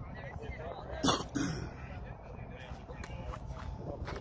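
Faint talking in the background, with a short, sharp noise about a second in and a smaller one shortly after.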